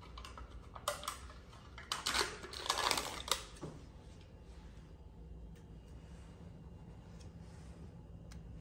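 Plastic yogurt tub being handled and opened: a few crackling rustles and clicks in the first three and a half seconds, then only a faint low hum.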